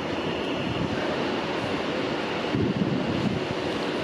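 Northern Class 150 Sprinter diesel multiple unit pulling away from the platform. Its underfloor diesel engines and wheels on the track make a steady rumble.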